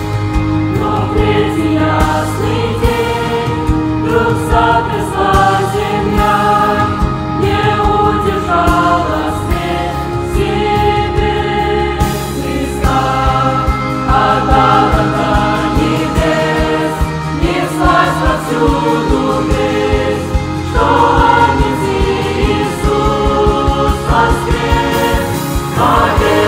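A mixed youth choir singing a hymn in several parts under a conductor, with long held notes and low sustained tones beneath.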